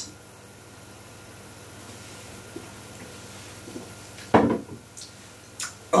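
A man drinking pear cider from a glass: faint swallows, then a short louder throaty sound a little over four seconds in, and a grunt of disgust at the very end.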